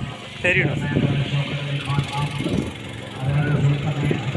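People's voices over a steady low hum like an idling engine, which drops out for moments and returns. A short, high, pitched call sounds about half a second in.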